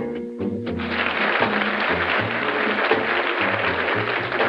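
Country band music with a steady bass beat. In the first second it carries the fading end of a phrase from the talk-box steel guitar.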